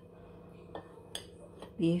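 A metal spoon clinking lightly against a ceramic bowl a few times while scooping ground taco meat.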